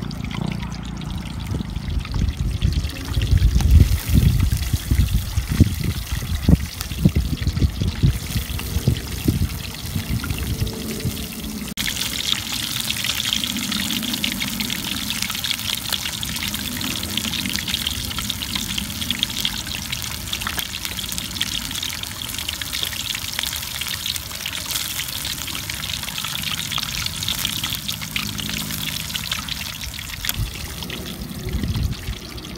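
Pork leg deep-frying in a wok of hot oil over a wood fire, with oil ladled over it. Wind buffets the microphone in the first third. After an abrupt change about twelve seconds in, a steady high sizzle from the close-up pan fills the rest.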